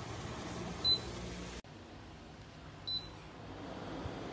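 Portable HEPA air purifier giving two short, high electronic beeps about two seconds apart as it takes commands from its remote control, over a steady background hiss.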